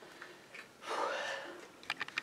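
A man's breathy exhale about a second in, followed near the end by sharp clicks and knocks of the camera being handled.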